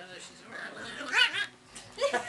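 Two small dogs play-fighting, with one giving a short, high yip about a second in.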